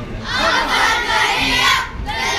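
A group of schoolboys shouting together in one long, loud group shout, which drops off just before the end.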